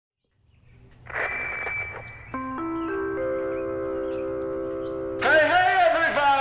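An announcement chime: four bell-like notes struck one after another, rising in pitch about a third of a second apart, then ringing together for about two seconds. A short hiss with a high tone comes before it, and a man's voice starts near the end.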